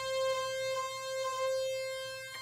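Moog Grandmother analog synthesizer sounding one steady, buzzy held note from two oscillators while one is fine-tuned by ear against the other. The level swells and dips slowly as the two pitches beat against each other.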